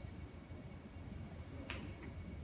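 A single sharp click near the end, over a faint steady low rumble and a thin, steady high-pitched tone.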